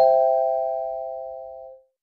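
A bell-like three-tone chime sound effect, struck just before and ringing on, fading steadily until it dies away near the end.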